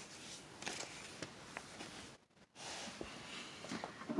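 Faint handling noise: soft rustling with a few light clicks, and a brief drop-out to silence a little past halfway.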